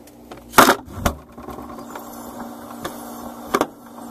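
Knocks and plastic rustling as the phone is set down among bagged frozen food, with a heavier thump about a second in as the freezer door shuts. Then a steady low hum inside the closed freezer, broken by a couple of sharp clicks near the end.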